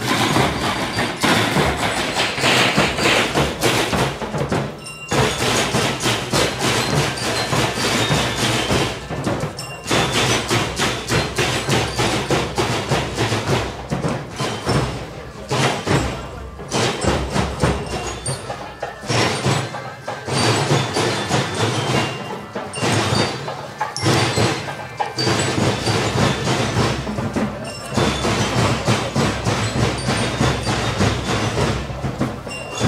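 A school marching band's drums, led by snare drums, beating a steady marching cadence, with short breaks between phrases.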